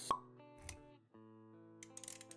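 Intro music for an animated logo: a sharp pop sound effect just after the start, a soft low thud about half a second later, then sustained plucked notes.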